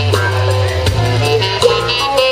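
Live band playing: a drum kit hitting over held bass notes, with electric guitar and keyboard notes on top.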